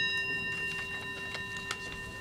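A bell struck once rings out with several clear, steady tones that slowly fade, most likely marking the opening of the session. A few faint clicks sound along the way.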